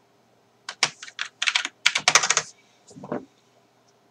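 Typing on a computer keyboard wrapped in a clear plastic cover: a quick run of keystrokes, then a brief low sound near the end.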